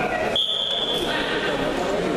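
Wrestling referee's whistle: one short, steady, high blast about half a second in, as the bout restarts, over the chatter of a crowd in a large hall.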